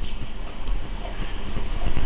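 Steady low rumbling noise with an uneven low flutter and no speech.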